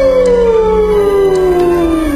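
A long, loud howl: a single drawn-out call that glides slowly down in pitch throughout.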